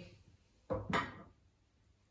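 Two short knocks close together about a second in, as a wooden-backed whiteboard eraser and a marker pen are handled at the whiteboard, the second knock followed by a brief scrape.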